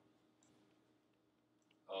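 Near silence, broken by a few faint ticks of a pen writing on paper.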